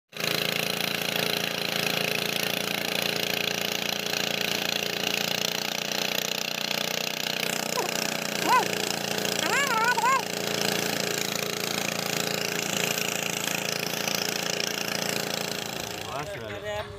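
Small wooden fishing boat's engine running steadily under way, mixed with the rush of wind and water along the hull. Short wavering high-pitched calls break through twice, about eight and ten seconds in.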